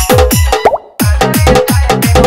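Chhattisgarhi DJ dance remix with a heavy, pitch-dropping kick drum at about four beats a second. About two-thirds of a second in, a quick rising blip leads into a brief drop-out. The beat comes back one second in.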